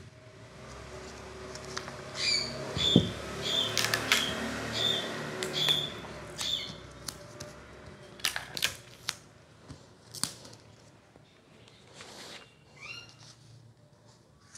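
Large scissors cutting through a kraft-paper sewing pattern, then the paper being handled and smoothed, with a few sharp clicks. Over the cutting runs a series of short high chirps, about two a second, that fades out a little past the middle.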